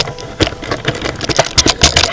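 A loud, rapid, irregular run of clicks and rattles, opening with a sharp knock.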